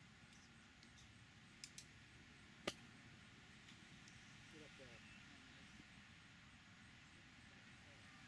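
A single sharp click of a golf iron striking the ball on a chip shot, about two and a half seconds in, preceded by two faint ticks.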